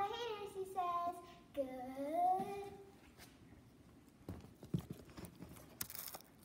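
A child's voice making wordless, sliding sung tones for about the first three seconds, followed by a few soft knocks and handling noise.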